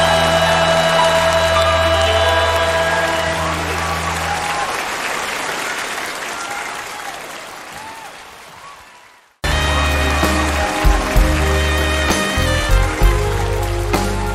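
A live band holds a song's final chord while audience applause rises and then fades away. About nine and a half seconds in, a hard cut brings in a band starting the intro of the next bolero song, with bass and drum hits.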